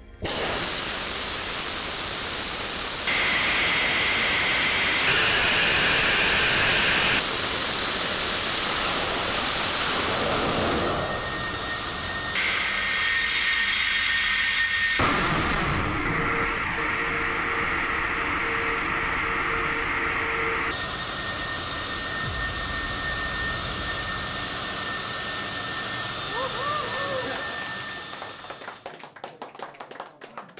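Nammo hybrid rocket motor, running on hydrogen peroxide oxidizer and solid fuel, firing on a test stand: a loud, continuous hissing rush that starts abruptly and dies away near the end. Its tone shifts abruptly several times. It is a steady burn with no surprises, which the team calls very efficient.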